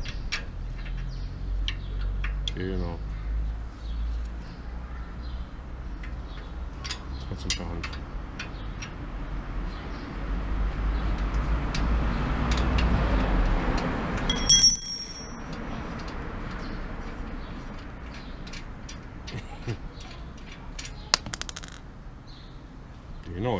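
Light metallic clicks and taps of hand tools on a bicycle's chain and rear derailleur, over a low outdoor rumble. The rumble grows until about fourteen seconds in, then drops off abruptly just after one short, bright metallic ring.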